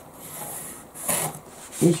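Pencil drawing a straight line along a metal ruler on tracing paper: a scratchy hiss in two strokes, the second shorter and brighter.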